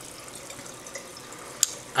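Steady water trickle from a reef aquarium's circulating water, with a single sharp click near the end.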